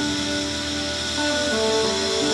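Live blues-rock band playing: electric guitar, bass and drums, with held notes that shift to new pitches about halfway through.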